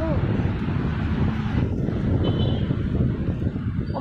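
Steady low rumble of heavy city traffic, with wind buffeting the microphone.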